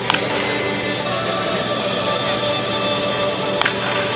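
Background music with two sharp cracks of a bat hitting a pitched baseball, one just as it begins and one near the end.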